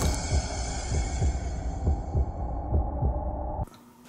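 Heartbeat sound effect: fast low thuds, about three a second, over a low hum, with a high hiss that fades away. It cuts off suddenly near the end.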